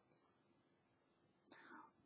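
Near silence, with one faint, short breath from a man about one and a half seconds in.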